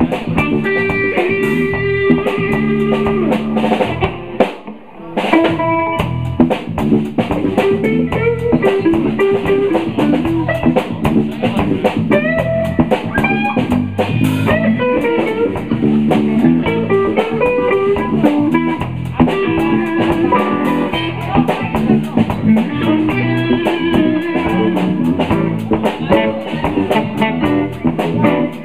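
A live blues band jamming a groove on drum kit, bass and electric guitar, with a brief dip in the playing about four and a half seconds in.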